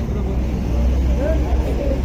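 Crowd chatter of a busy livestock market, several voices talking at once over a low steady rumble.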